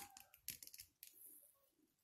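Near silence with a few faint clicks of small plastic action-figure parts being handled.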